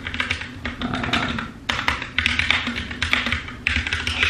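Typing on a computer keyboard: irregular runs of quick keystroke clicks with short pauses as a message is written.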